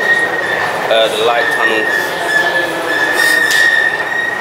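A steady high-pitched squeal over the loud, echoing noise of a London Underground station, the sort of metal squeal that rail wheels or escalator machinery make.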